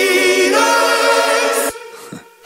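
Pop song with layered, held vocal harmonies sung like a choir, with the bass dropped out. Near the end the music cuts off suddenly into a brief quiet gap.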